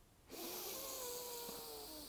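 A person's long, slow, deep inhalation through the nose, a steady airy rush that starts about a third of a second in and fades near the end, with a faint steady tone through its middle.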